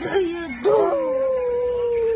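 A toddler's voice: a couple of short vocal sounds, then one long, drawn-out 'ooo' note that slowly falls in pitch, sung with pursed lips.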